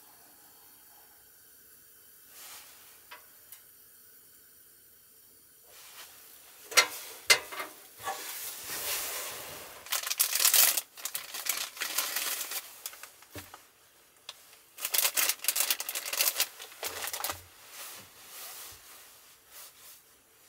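A few sharp knocks as a metal cassette gas heater is picked up and moved off the table, then loud bursts of crinkling and tearing as a paper-wrapped packet is opened and unfolded.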